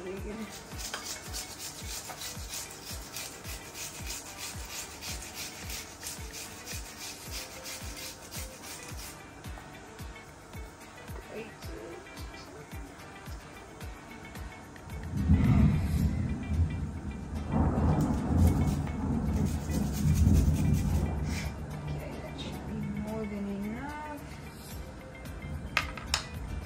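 An onion being grated on a flat metal hand grater: a steady run of quick rasping strokes. Past the middle the sound turns louder and deeper for several seconds.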